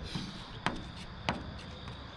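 Two light, sharp taps about two-thirds of a second apart: a plastic spreader knocking against the bus's sheet-metal roof as filler is spread and smoothed over patched holes.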